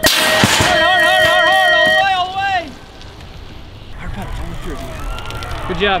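BMX starting-gate cadence ending: the final long tone sounds for about two seconds as the gate drops with a loud crash at its start, and voices shout over the tone.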